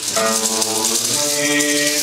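Medieval-style folk ensemble coming in at full level: a shaken rattle-type percussion keeps up a steady hissing shimmer over sustained sung or droning notes, which change pitch about a second in.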